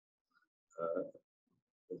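A man's brief creaky vocal hesitation sound, about a second in, set in near silence; speech resumes at the very end.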